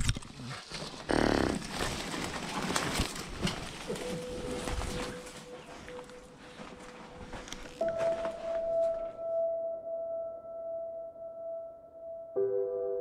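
Rustling and crunching as someone pushes through leafy undergrowth and over debris, with scattered clicks of footsteps. Soft ambient music with long held notes fades in about four seconds in, and the location sound cuts out about nine seconds in, leaving only the music.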